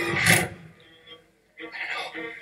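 A man's voice in film dialogue: a short loud burst of voice at the start, a brief lull, then speech picking up again near the end.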